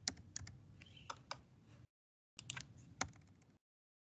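Faint, scattered clicks of computer keyboard keys being pressed one at a time while text is deleted. The sound cuts out to complete silence twice, once about two seconds in and again near the end.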